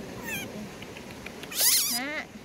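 Infant monkey crying in high, thin squeals. A short falling squeak comes just after the start, then a louder wavering screech near the end.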